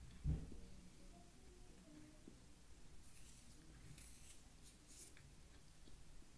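Faint crunching of frozen cornstarch being chewed, with a cluster of crisp crackles from about halfway through. A single low thump comes just after the start.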